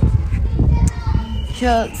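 People's voices: low, indistinct talk and background voices over a steady low rumble, with a person starting to speak clearly near the end.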